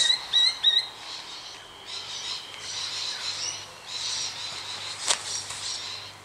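A run of short, high chirping notes, about three a second, in the first second. Then a faint hiss over a steady low hum, with a single sharp click about five seconds in.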